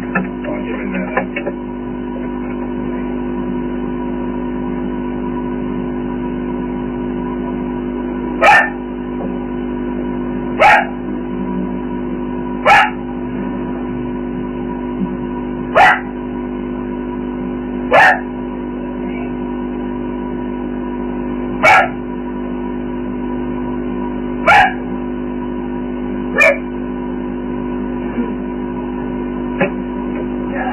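A steady drone of several held tones, with eight short, loud sounds spaced two to three seconds apart, starting about eight seconds in.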